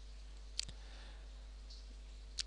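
A single short computer mouse click about half a second in, over a faint steady hum.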